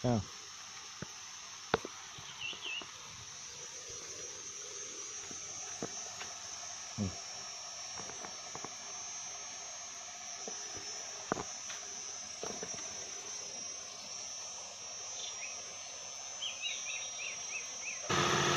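Steady high-pitched insect chorus over quiet outdoor background, with scattered light clicks and short runs of quick chirps about two seconds in and again near the end.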